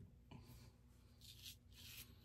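Near silence, with a few faint, brief scrapes of a stainless steel safety razor across lathered stubble, mostly in the second half.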